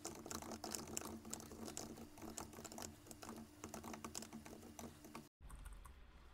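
Typing on a computer keyboard: a fast, irregular run of faint key clicks over a low steady hum, cut by a brief dropout about five seconds in.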